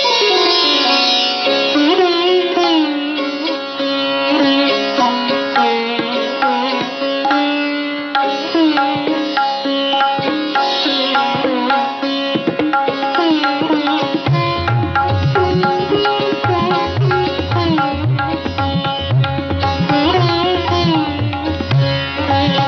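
Sitar playing a Masitkhani gat with todas and rhythmic tihais: plucked notes with gliding bends over the ringing of its sympathetic strings. A low drum rhythm, typical of tabla, comes in about two-thirds of the way through.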